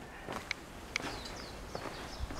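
Faint footsteps on gravel, a few soft steps about half a second apart.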